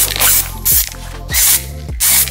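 Aerosol can of sparkle spray paint hissing in short bursts, about three in two seconds, as it is sprayed in passes, over background music.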